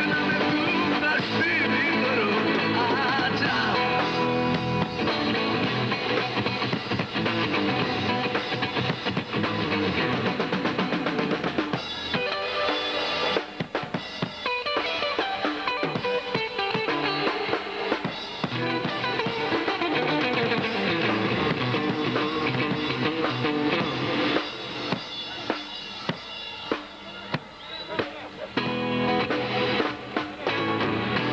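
Live rock band playing: electric guitar over a drum kit. In the last few seconds the music breaks into separate accented hits with short gaps between them.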